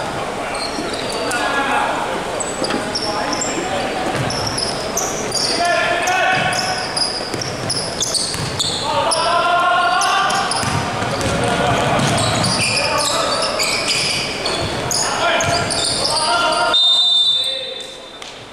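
Sounds of a basketball game in a large hall: the ball bouncing on the wooden court, sneakers squeaking and players' voices calling out, all echoing.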